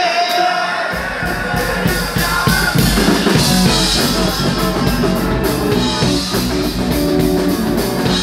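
Live rock band playing loud, with electric guitars, bass guitar and drum kit; the bass and drums come in about a second in under held guitar notes, and the full band drives on from there.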